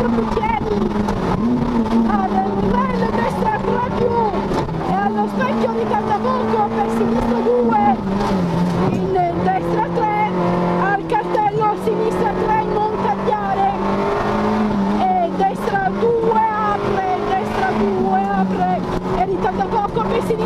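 In-car sound of a Peugeot 106 rally car's four-cylinder engine driven hard on a special stage. The revs rise and fall with the corners, with a clear drop in engine pitch a little before halfway and a climb again later.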